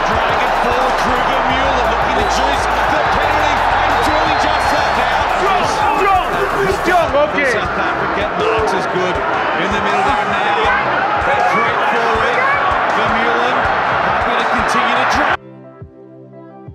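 Dense stadium crowd noise with many voices over background music with a low beat; near the end it cuts off suddenly, leaving quieter music alone.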